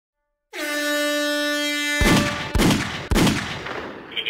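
Intro sound effects over a title card: a steady horn tone for about a second and a half, then three heavy booms about half a second apart.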